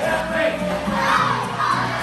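A group of children shouting together in unison, the shout swelling about halfway in, over background music.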